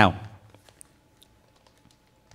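A man's spoken word trails off at the start, followed by a near-quiet pause with a few faint, scattered light clicks.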